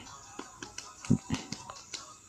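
Faint, irregular clicks and taps from a finger working a phone's touchscreen, picked up by the phone's own microphone, with a couple of short low thuds a little after a second in.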